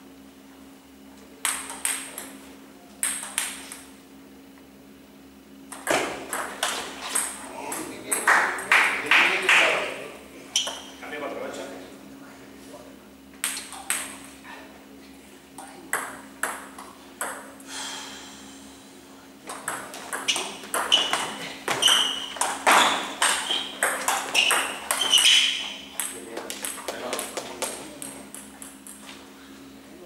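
Table tennis rallies: the plastic ball clicking back and forth off rubber paddles and the table in several quick runs of hits, with short pauses between points. A steady low hum runs underneath.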